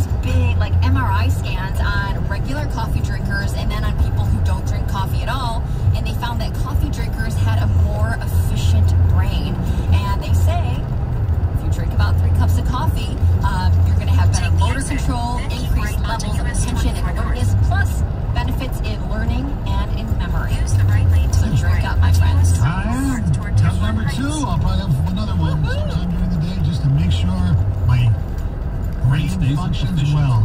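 Music with a sung or spoken voice and a bass line playing over a car radio, with steady road noise from the moving car underneath.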